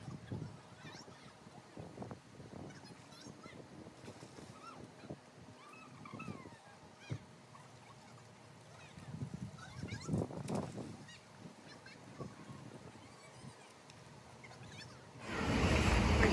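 A large honeybee swarm is stirred up as it is shaken and scooped off vine-covered branches into a nuc box: a faint buzzing hum with irregular rustling of the branches, loudest about ten seconds in, and scattered short high calls.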